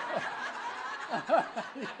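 A congregation laughing together: several voices chuckling and laughing at once in short, overlapping bursts, loudest near the start and again around the middle.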